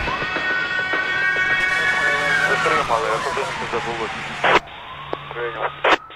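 Police siren wailing as part of a programme's closing jingle: one long rise and slow fall in pitch, cut off about four and a half seconds in, then a fainter wail starting to rise again near the end.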